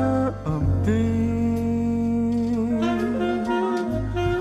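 Jazz ballad with no vocals: a horn plays long held notes over a steady low bass. One note ends just after the start, a new one is held from about a second in and wavers in a slow vibrato past the midpoint, and another note begins near the end.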